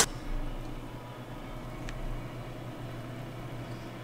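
Steady low hum of kitchen room tone, with a sharp click at the very start and a faint tick about two seconds in.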